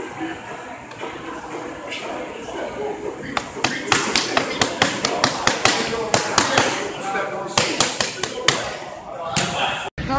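Boxing-gloved punches landing on focus mitts: a long run of sharp smacks in quick combinations that starts about three seconds in and stops shortly before the end, over background voices.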